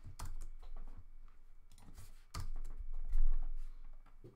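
Typing on a computer keyboard: an irregular run of key clicks, with a heavier thump a little after three seconds in.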